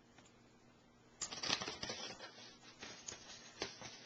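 Faint room tone, then about a second in a sudden burst of close rustling and scratching with sharp clicks that carries on irregularly: objects being handled and moved right by the camera's microphone.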